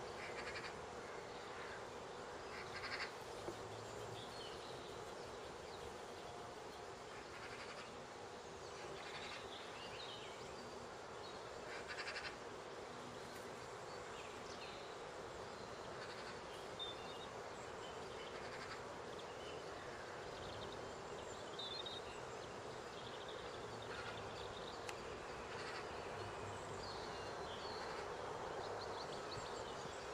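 Faint outdoor ambience: a steady background hiss with scattered short, high bird chirps every few seconds.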